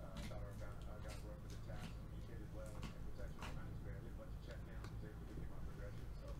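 Quiet handling noises from opening trading card packs: scattered light clicks and rustles of cards and wrappers, over a steady low electrical hum, with faint voices in the background.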